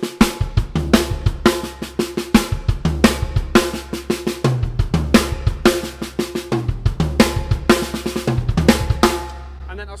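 Drum kit played at a steady moderate tempo, looping a sextuplet drum-fill pattern: a six-stroke roll on the snare drum (right, left, left, right, right, left) with accents at each end, then two bass-drum kicks, two snare strokes and two more kicks, over and over. The playing stops about half a second before the end.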